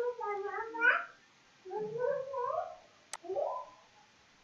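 A domestic cat meowing three times in drawn-out, wavering calls, the first long and the last short, with a single sharp click about three seconds in.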